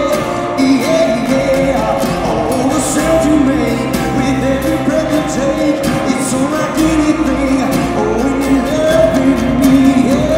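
Live acoustic rock performance: a male singer's vocals over acoustic guitar.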